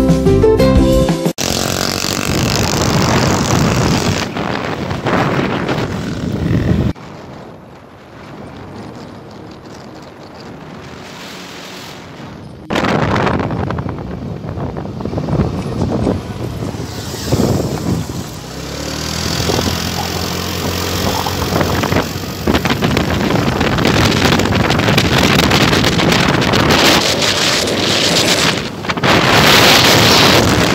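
Wind rushing over the microphone together with the engine and road noise of a moving vehicle, after a short bit of music that cuts off about a second and a half in. The rush drops to a quieter level for about six seconds midway, then comes back loud.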